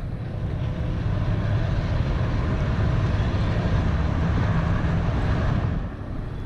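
Steady rumble of vehicle noise, strongest in the low end, dropping slightly just before the end.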